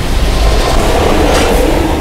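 A loud rushing, rumbling noise over a deep bass drone, easing off near the end: a cinematic sound-design effect in a film-style soundtrack.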